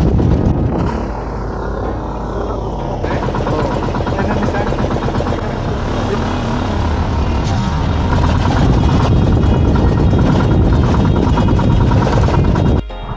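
Outrigger bangka boat's engine running steadily under way, with background music over it.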